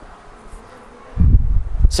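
Microphone noise: after a second of quiet, a loud low rumble sets in and lasts under a second, with a short click near its end.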